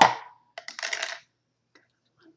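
A short hard clatter with a brief ring as a removed hot roller and its pin are set down, then a second, softer clatter about half a second later.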